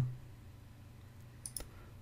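Computer mouse clicked twice in quick succession about a second and a half in, against a quiet room.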